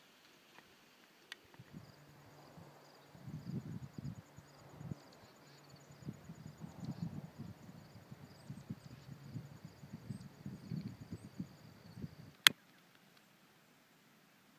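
Faint, steady, high-pitched trilling of insects, pulsing rapidly, over an irregular low rumble of outdoor noise. A single sharp click near the end is the loudest sound.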